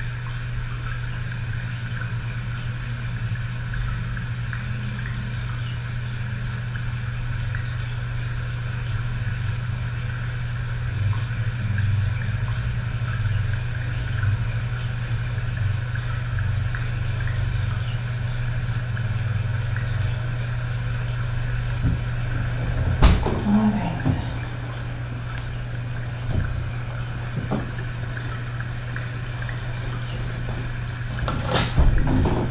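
A steady low hum, machine-like and unchanging, with a single sharp knock about 23 seconds in and a few faint ticks after it.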